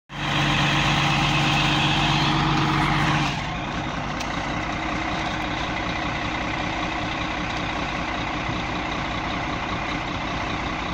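Caterpillar crawler bulldozer's diesel engine running: a loud, steady drone for about the first three seconds, then it drops to quieter, steady idling.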